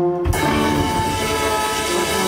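Live soul band with a horn section (trumpet, saxophones, trombone), electric guitars and bass holding one long sustained closing chord. The chord starts with a hit about a third of a second in, right after short horn stabs.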